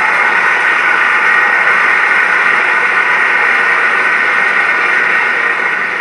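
Sitcom studio audience applauding steadily, heard through a television's speaker.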